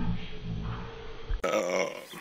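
A man's low grunting sounds, then a sudden cut, about one and a half seconds in, to a louder, brighter end-card sound.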